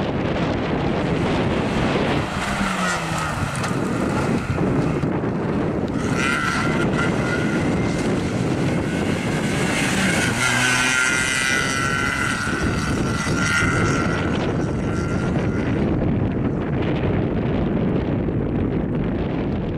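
Skoda Fabia rally-slalom car's engine revving up and down as the car is driven hard through a cone slalom, with wind rumbling on the microphone. A high wavering tone rises over it through the middle stretch while the car corners.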